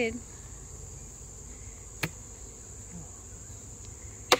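Steady high-pitched chirring of insects in the background, with a single sharp click about two seconds in as the wooden hive frames are handled.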